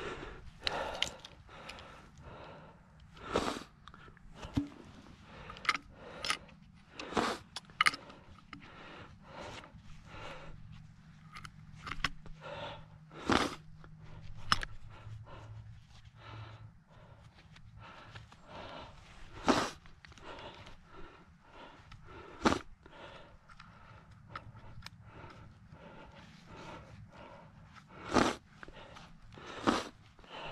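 A trapping tool chopping and scraping in wet, muddy soil as a trap bed is dug out: irregular crunches and scrapes with about half a dozen louder knocks spread through.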